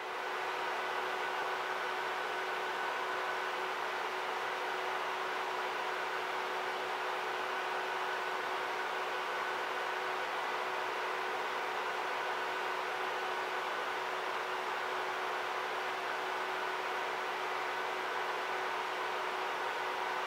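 A steady, unchanging hiss with faint steady hum tones beneath it, fading in at the start.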